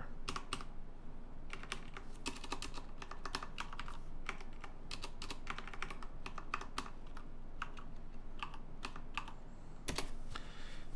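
Typing on a computer keyboard: irregular runs of sharp keystrokes with short pauses between them.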